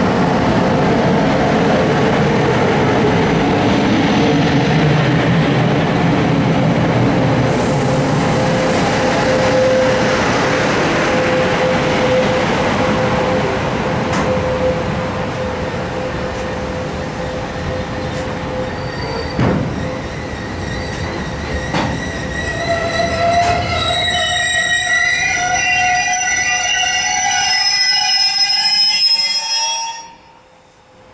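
Freight train hauled by two Siemens ES 64 F4 (BR 189) electric locomotives rolling past, followed by its container wagons, with a heavy, steady rumble of wheels on rail. In the last several seconds the wagon wheels squeal in several high, wavering tones.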